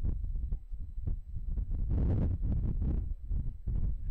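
Wind buffeting the camera microphone: an uneven low rumble that swells and drops in gusts, with its biggest gust about two seconds in.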